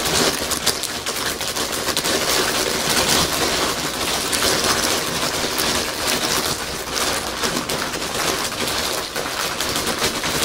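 Plastic snack bag crinkling and rustling as it is squeezed and handled close to the microphone: a loud, dense crackle that never lets up.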